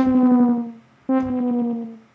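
Two synthesizer notes of the same pitch, about a second apart, played through Aqusmatiq Audio's Dedalus granular delay plugin. Each note starts sharply and glides slightly down in pitch as it fades.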